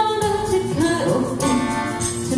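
A woman singing a slow pop song into a microphone, accompanied by strummed acoustic guitar.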